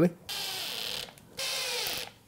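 Cordless 18V drill-driver running in two short bursts, each under a second, driving screws through a router base into MDF using stacked extension bits.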